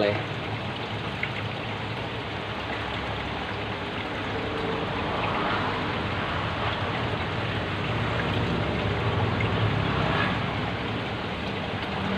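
Aquarium water bubbling and trickling steadily from the tank's aeration, over a low steady hum.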